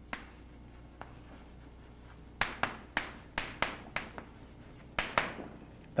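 Chalk writing on a blackboard: sharp taps and short scrapes of the chalk as words are written, a few scattered early, a quick run from about two and a half to four seconds in, and two more near five seconds.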